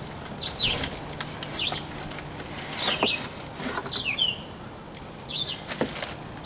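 A small bird chirping over and over, short dipping chirps, one or two about every second. Under them, rustling and clicking of cardboard and plastic packaging being handled.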